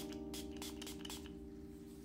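Soft background music with sustained keyboard-like notes, under a run of faint, quick short hisses in the first second or so, fitting a pump-mist setting spray being spritzed onto the face.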